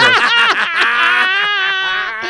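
Men laughing loudly, one in a long, high-pitched, wavering laugh.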